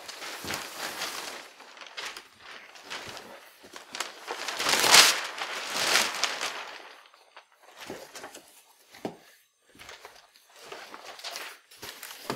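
Large cardboard shipping box being handled and stood upright: scraping and rustling of cardboard, loudest about five seconds in, followed by a few scattered soft knocks and crinkles.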